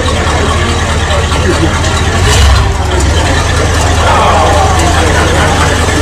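V8 engine of an early-1970s Chrysler sedan idling, a steady low rumble from the exhaust, with people talking in the background.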